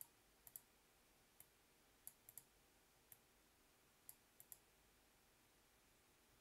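Near-silent room tone with about eleven faint, sharp clicks at irregular intervals, some in quick pairs.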